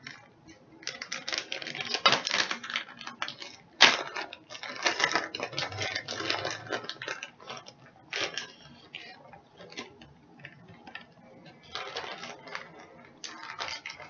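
Crinkling and rustling of a plastic bag of shredded mozzarella cheese being handled and the cheese put onto a baked potato, with light clicks and taps. It is busiest in the first half, grows sparser later, and has one sharp click about four seconds in.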